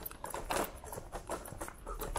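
Scooter wheels clattering over cobblestones: a rapid, irregular rattle of small knocks, with a few louder ones about half a second in.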